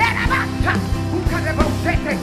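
Live church praise music with a steady bass and drum beat, and short, sharp vocal cries shouted into a microphone over it.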